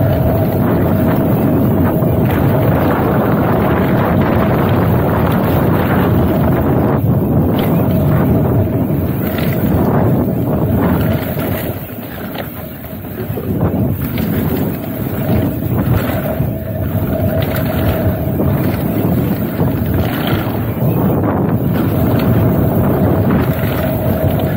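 Heavy wind rushing over an action camera's microphone during a fast mountain-bike descent, with short knocks and rattles from the bike over rough trail. The rush eases briefly about halfway through.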